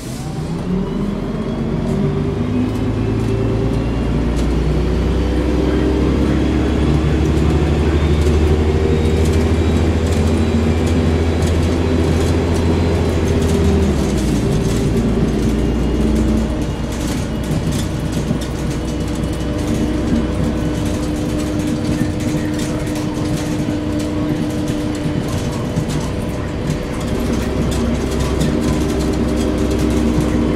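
Volvo Olympian double-decker bus's diesel engine heard from inside the passenger saloon as the bus pulls away and accelerates, its note climbing. The note drops about halfway through with a gearbox upshift, then climbs again as the bus keeps driving.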